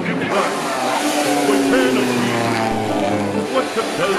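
Vintage racing car engine running past, with a slowly falling pitch, under operatic bel canto singing.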